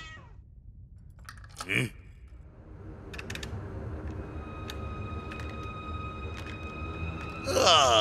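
Cartoon soundtrack: a low, steady drone with two faint held tones underneath, broken by a short grunt about two seconds in and a loud shouted exclamation from one of the characters near the end.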